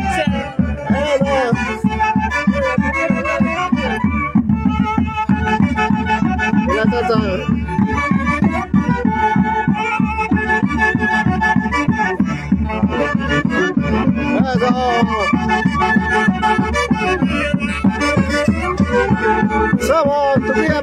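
Live Andean Santiago music from a band of saxophones playing the melody over a steady beat of painted bass drums.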